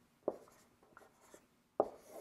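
Dry-erase marker writing on a whiteboard: a few short, faint strokes, with a sharper tap near the end.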